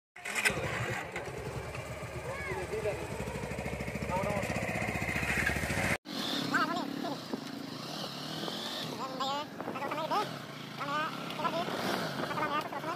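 Motorcycle engines idling close by, with a steady, even firing pulse. The sound cuts off sharply about six seconds in, and after that a person's voice rises and falls in pitch over a lighter background.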